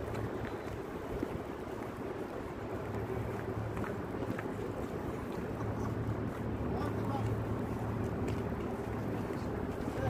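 Outdoor city background: a steady low rumble with wind noise on the microphone and faint, indistinct voices of passers-by.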